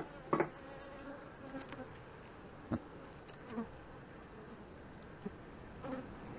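Honey bees humming steadily over an open hive box. A few short wooden knocks come through as a frame is worked loose and lifted out.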